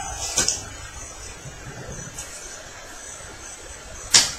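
Playing cards handled on a playmat: a couple of short card taps about half a second in, then quiet room noise.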